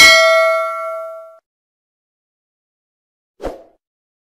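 A single bell-like ding rings out with several pitches at once and dies away over about a second and a half. A short, dull thump comes near the end.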